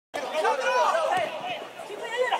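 Several people's voices calling out and chattering over one another, loudest in the first second.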